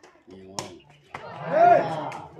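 Spectators' voices, with two sharp cracks of a sepak takraw ball being kicked, about half a second in and again about a second in. Near the end comes a loud shout whose pitch rises and falls.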